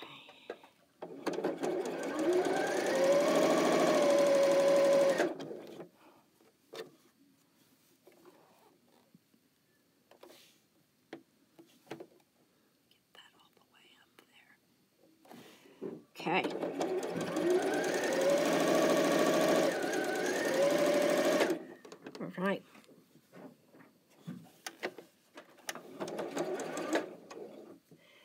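Computerized sewing machine stitching in two bursts of a few seconds each, about a second in and again about sixteen seconds in; each burst opens with a rising whine as the motor speeds up, then runs steadily. The stitches are not catching and a thread nest forms, a fault the sewer puts down to the bobbin running low on thread.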